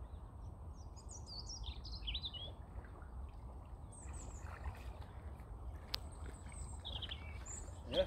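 Small birds chirping and singing in short phrases at intervals over a steady low rumble, with a single sharp click about six seconds in.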